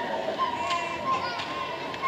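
Solo violin playing long, held notes that sag slightly in pitch, with children's voices from the audience underneath.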